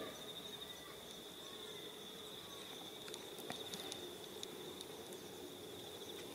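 A steady high-pitched insect trill, cricket-like, runs unbroken, with a few faint clicks about three and a half seconds in.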